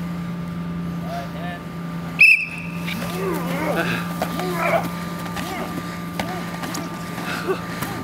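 A single short whistle blast about two seconds in, starting the pugil stick bout, followed by several people shouting and yelling as the fighters engage.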